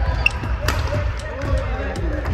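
Badminton rally: a sharp racket strike on the shuttlecock about two-thirds of a second in, with footsteps thudding on the wooden court floor.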